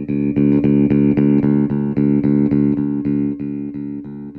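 Electric bass played through a Gallien-Krueger Fusion 550 hybrid valve bass amp head: the same note is picked over and over, about four times a second, while the gain knob is adjusted to show the valve preamp's slight overdrive. Near the end it gets a little quieter and less bright.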